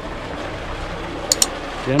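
Hot-spring water pouring from a pipe into a concrete channel and running along it, a steady rush of water. Two sharp clicks come in quick succession a little past halfway.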